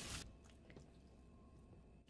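Near silence: faint squishy handling of raw pork loin on plastic wrap that dies away within the first moment, then only room tone.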